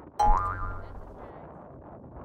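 Cartoon 'boing' sound effect: a sudden thump with a short twang rising in pitch about a quarter second in, fading within about half a second, over faint background hiss.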